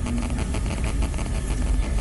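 Steady low rumble with a faint hum and hiss, background noise on the open microphones of a broadcast interview line.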